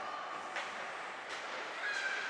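Faint sound of an ice hockey rink during play: an even hiss with two faint knocks, about half a second and a second and a half in, and a faint steady tone starting near the end.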